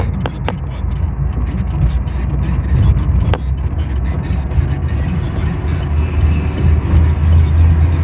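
A steady low rumble of road and engine noise inside a moving car's cabin, growing louder over the last few seconds. A few sharp clicks sound near the start and again about three and a half seconds in.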